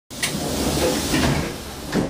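Running noise inside a moving train carriage: a steady low rumble with rattling and knocking over it, starting abruptly as the sound cuts in.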